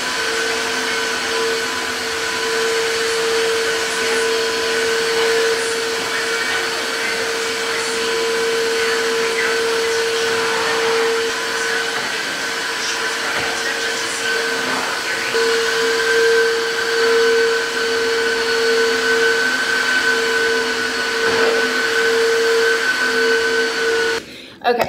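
Tineco cordless wet-dry floor washer running as it mops a hard floor: a steady motor hum with a whine over the rush of its suction.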